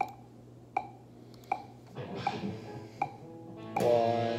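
A steady click track ticks about four times every three seconds. About halfway through, a Les Paul-style electric guitar starts playing quietly, then comes in loud with a full ringing chord just before the end.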